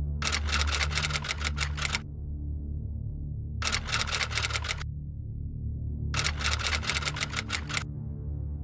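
Computer keyboard typing sound effect: three bursts of rapid key clicks, each a second or two long with pauses between, over a low steady music drone.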